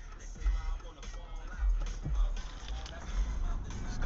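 Music playing inside a car, with a deep bass beat.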